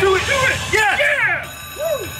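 Dragon Link Golden Century slot machine's electronic sound effects on a free-game spin: a quick run of rising-and-falling chime tones as fireball symbols land on the reels, with a sweeping tone about a second in.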